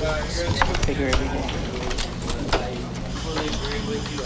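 Indistinct voices over a steady low hum, with sharp clicks and knocks scattered through.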